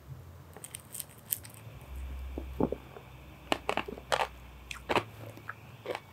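A man sipping a frothy egg-white cocktail and tasting it: scattered small mouth clicks and lip smacks, with a faint low rumble in the middle.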